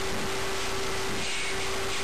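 Steady background hiss with a constant hum underneath: room tone, with no distinct events.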